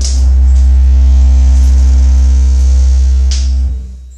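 The last note of a band practice: a cymbal crash over a loud, deep note held steady for about three and a half seconds. A second cymbal hit follows near the end, and the note then dies away.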